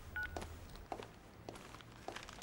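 A short two-tone keypad beep from a mobile phone as the call is ended, followed by a few soft footsteps about every half second.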